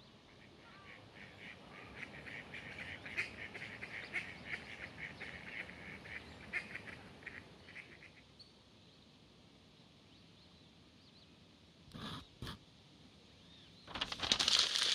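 Faint bird calls: a rapid run of short, repeated notes lasting several seconds, over a low outdoor background hiss. Near the end there are two short, sharp clicks.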